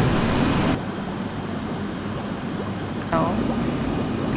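Steady low background hum, brighter and fuller for the first moment before dropping to a quieter level, with a short spoken sound about three seconds in.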